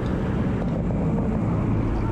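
Steady drone of a light aircraft's engine with wind noise, heard from inside the cabin in flight.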